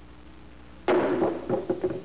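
A stone dropped onto an egg, smashing it: one sudden loud impact about a second in, followed by a short run of smaller knocks.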